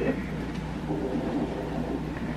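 A steady low hum under faint muffled rustling, typical of a handheld phone's microphone being carried in a room.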